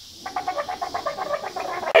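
Stifled, rapid human laughter: a quick run of short breathy pulses, about ten a second, ending in a louder burst.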